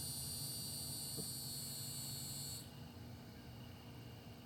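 A chorus of cicadas buzzing steadily at a high pitch, which cuts off suddenly about two-thirds of the way through, leaving a fainter insect buzz behind.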